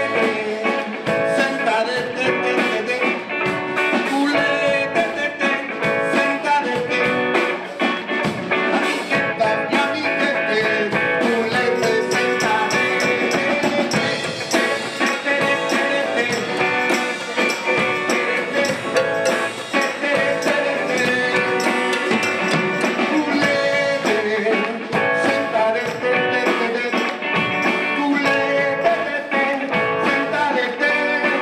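A live band plays an upbeat song with a singer, electric guitar and drum kit.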